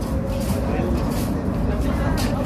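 Steady low rumble of a Cairo Metro Line 2 train running into the station, with people's voices faintly underneath.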